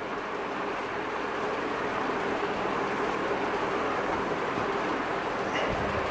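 Whiteboard being wiped with a duster: a steady rubbing hiss, with a low thump just before the end.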